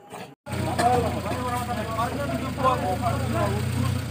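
An engine idling with a steady low hum, coming in abruptly about half a second in, under people talking.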